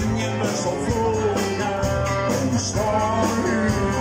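Live dansband music: electric guitars, keyboard and drum kit playing over a steady beat, with a wavering lead melody on top.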